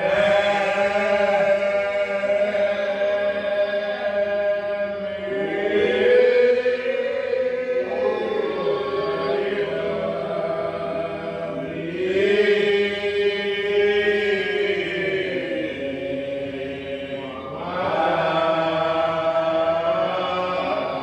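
Slow unaccompanied singing in long drawn-out notes that slide between pitches, each phrase held for several seconds before a short break and a new phrase.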